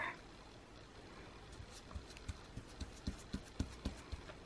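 Faint, scattered light taps and clicks, a few a second and more frequent from about a second and a half in, of a paintbrush dabbing Mod Podge glue over paper on a card.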